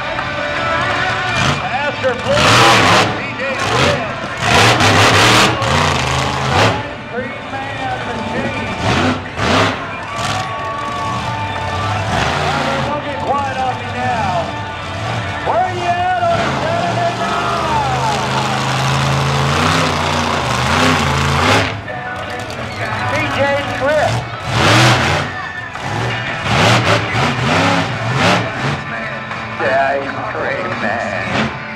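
Monster truck engine revving in repeated loud bursts, with a PA announcer's voice and music underneath.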